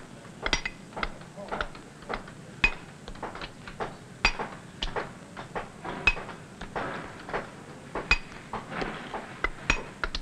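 Steel hammer striking a steel mason's chisel into a sandstone block, in irregular taps about two to three a second, each with a short metallic ring, as the mason dresses a rounded surface.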